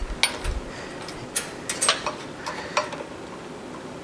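Scattered small clicks and taps as quick-connect fittings and plastic air tubing are handled against a sandblast pot's metal air piping, with a low thump about half a second in.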